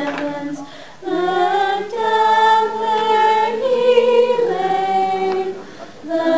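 A small mixed choir of teenage voices singing a cappella in long held notes, with a short pause for breath about a second in and another near the end.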